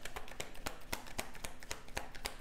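A deck of tarot cards being shuffled by hand: a quick, irregular run of light card clicks and slaps, about five a second.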